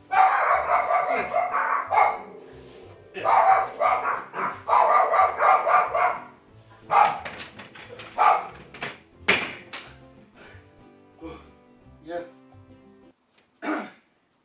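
Pomeranian barking in two quick runs of barks, then a few single barks.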